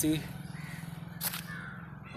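A bird calling twice with short harsh calls, over a steady low hum.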